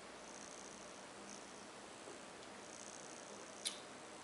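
Faint room tone while a sip of beer is taken from a glass, with one brief soft click near the end, such as a lip smack after the sip.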